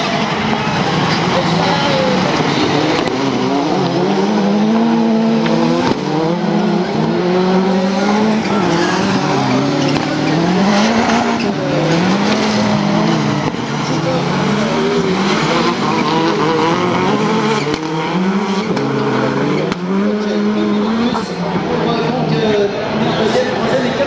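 Several touring autocross cars racing on a dirt track. Their engines rev up through the gears, the pitch climbing and dropping back at each shift over and over, with overlapping engines and loose-surface tyre noise.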